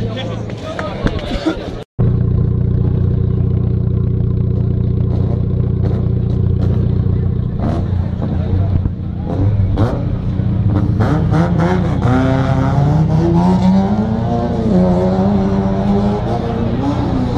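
Mitsubishi Lancer Evolution's turbocharged four-cylinder heard at its exhaust, idling steadily after a cut about two seconds in. From about eleven seconds in the revs climb slowly and are held up, with a short dip near the end.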